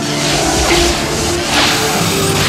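Film score music under the crackling electric sound effect of Force lightning, with noisy whooshing sweeps twice in quick succession.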